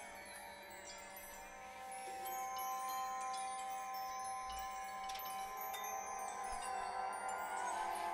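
Computer-generated electronic soundscape from Max software reacting to the colours and movement of the painting: two held tones under a scatter of high, tinkling chime-like notes, growing a little louder about two seconds in.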